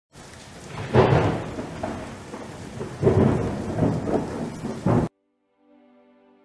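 Thunderstorm sound effect: rumbling thunder over rain, swelling loudly three times, about two seconds apart, then cutting off suddenly just after five seconds. Faint sustained music notes follow.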